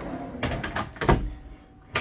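Wooden cabinet drawers on full-extension metal slides being pulled open and pushed shut. A sliding rumble runs between several knocks, the loudest about a second in, and a sharp click comes near the end.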